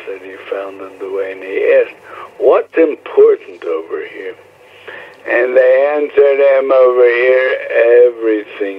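Only speech: a voice talking over a narrow, telephone-like line.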